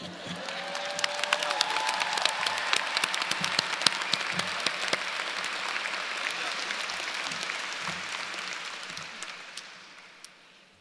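Audience applauding: many hands clapping, swelling in the first second, holding steady, then dying away near the end.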